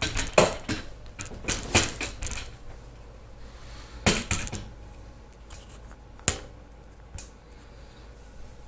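Footsteps on a hardwood floor with handling knocks and clicks: a quick run of knocks in the first couple of seconds, a pair about four seconds in, then a few single knocks.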